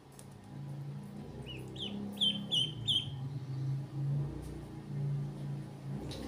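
Ducklings peeping: a quick run of about five high peeps a little after the first second, over a low steady hum.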